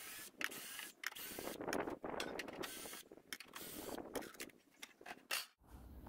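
Cordless drill working at the sheet-metal cover of an old air conditioner to get it off. The sound is faint and comes in several short stretches that cut off abruptly.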